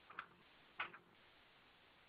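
Near silence with two faint short ticks, a little over half a second apart.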